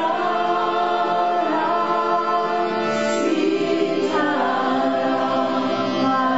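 Group devotional chanting, several voices singing together over a steady harmonium drone, with a new phrase starting about four seconds in.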